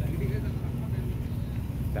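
Background ambience of an outdoor crowd: faint voices of people talking over a steady low rumble.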